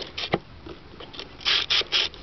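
Knob on a grimy 1969 GE clock radio being turned by hand, scraping and rasping in short strokes, with a click about a third of a second in and the loudest rasps near the end.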